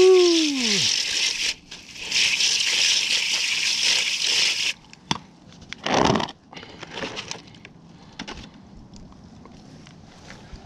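Garden-hose spray nozzle spraying water onto tumbled jasper stones in a plastic colander, in two bursts of hissing spray, the second stopping just under five seconds in. About six seconds in there is a single short knock as a plastic sifting screen is handled, followed by a few light clicks.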